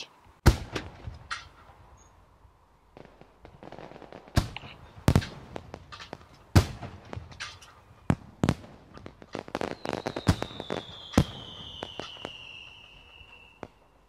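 Fireworks going off: a series of sharp bangs with crackling between them, and a long whistle that slowly falls in pitch from about two-thirds of the way in.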